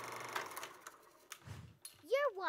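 Microphone handling noise: rustling that fades early on, then a few sharp clicks and a low bump about one and a half seconds in, as a handheld microphone is taken up.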